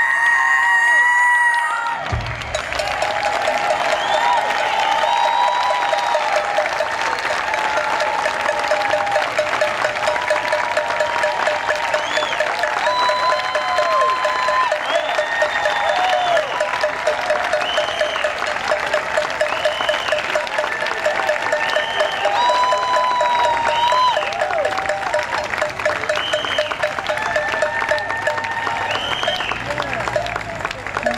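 Live South African jazz band playing, with crowd applause. A held high note gives way about two seconds in to the full band, with a fast, even rhythmic pulse and rising-and-falling vocal or horn lines over it.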